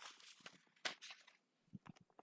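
Near silence with faint rustling and a few soft clicks.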